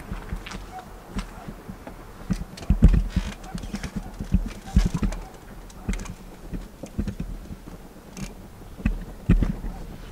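Irregular knocks and low thumps of someone climbing a telescoping aluminium ladder and clambering into a hard-shell rooftop tent, the heaviest thumps about three seconds in and near five seconds.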